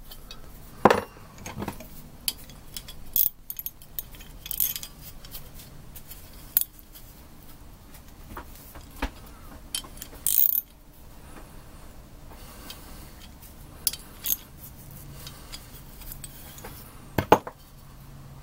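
Metal clicks and knocks from a single-pot brake master cylinder being handled and its parts fitted into the bore, with a brief scraping rattle about ten seconds in and two sharp knocks near the end.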